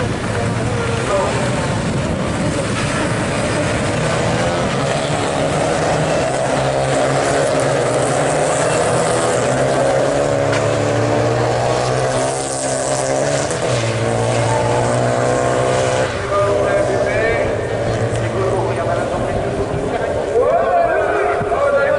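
Renault Clio rallycross race cars running at race pace, their engine notes rising and falling as they accelerate and change gear around the circuit.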